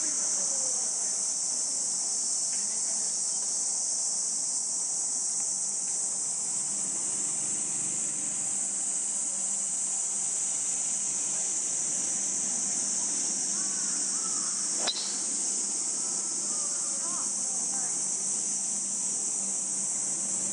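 A steady, high-pitched chorus of summer insects shrilling without a break. One sharp click about three-quarters of the way through.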